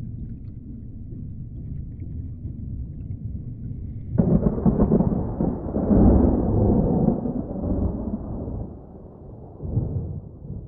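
A low, steady rumble. About four seconds in it breaks into a sudden, louder roll of thunder, which swells and then slowly dies away.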